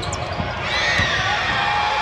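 A basketball bouncing on a hardwood court during play, a few sharp bounces over the steady background noise of a large arena.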